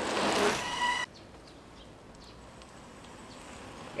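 Bicycles rolling past on asphalt, a hiss that swells and fades with a brief high ringing tone, cut off abruptly about a second in. After the cut there is quiet outdoor ambience with faint chirping.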